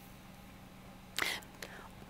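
Quiet studio room tone with a faint steady hum, broken about a second in by a short breathy, whispery voice sound from a speaker and a small click just after.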